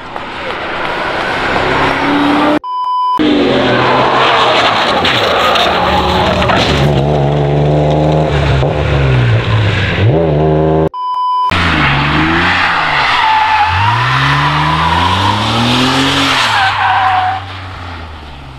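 Track cars' engines revving up and down while their tyres skid and squeal as they lose grip, in several clips cut together. The sound drops out briefly twice, each time with a short beep-like tone.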